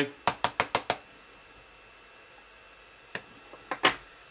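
A sharp implement scraped across a smartphone's glass screen in a scratch test of a wipe-on liquid nano screen protector: five quick, sharp strokes within the first second, then two or three more near the end.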